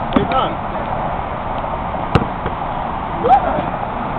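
A basketball strikes a hard surface once, a sharp single knock about two seconds in, over a steady background hiss. Faint voices come and go.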